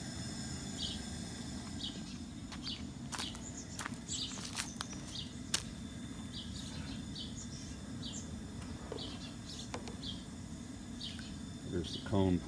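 Insects chirping outdoors, short high chirps repeating every second or less, over a steady low rumble, with a few sharp clicks in the middle.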